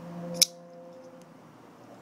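A single sharp metallic click from a titanium folding knife as its blade is snapped closed, followed by a much fainter tick.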